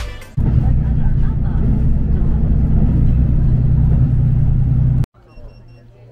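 Loud, steady low rumble of a running vehicle, cutting off suddenly about five seconds in. A much quieter background follows, with three short high beeps.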